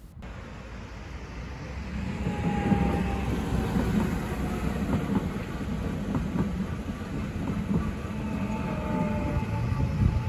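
Red passenger train crossing a road at a level crossing with lowered barriers. Its running noise builds over the first two to three seconds and then stays steady as it passes.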